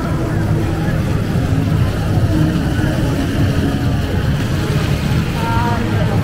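Busy outdoor pedestrian-area ambience: voices of passers-by over a steady low rumble, with one voice standing out briefly near the end.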